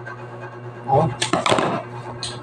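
A small plastic noodle seasoning sachet crinkling and being torn open by hand, in a short scratchy burst a little after a second in, with a brief voice sound just before it.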